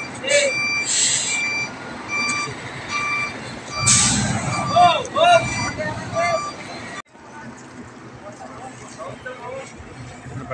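A truck's reversing alarm beeping in a steady repeating pattern while the 12-wheeler is put in reverse, with men shouting over it and a hiss or two. The sound stops abruptly about seven seconds in.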